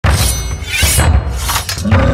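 Edited trailer sound effects: several shattering crashes in quick succession, laid over music with a heavy bass.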